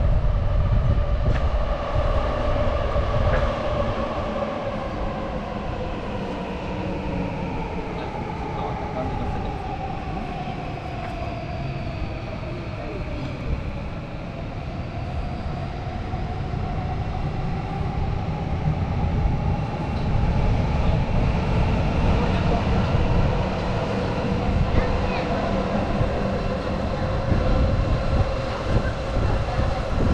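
Electric train running on an elevated railway line, a low rumble with a motor whine that slowly falls in pitch and then rises again.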